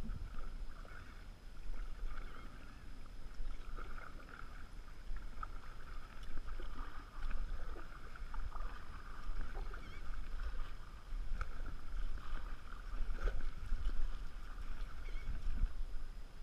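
Kayak paddle strokes dipping and splashing in the water, with a steady low rumble underneath.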